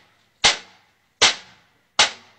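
Sharp bangs about three-quarters of a second apart, each with a short fading ring: a man striking hard with a shovel.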